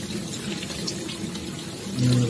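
Hotpoint Ariston LFT228A dishwasher running, with a steady rush of water inside it.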